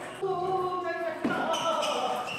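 A table tennis ball bouncing, with one sharp tap about a second in, under a person's voice calling out.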